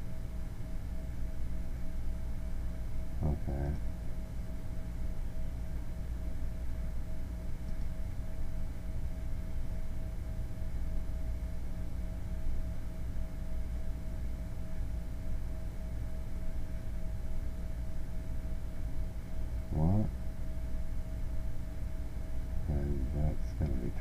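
Steady low electrical hum with a faint constant tone above it, the background noise of a computer recording setup. A man's voice murmurs briefly twice, about three seconds in and near the end.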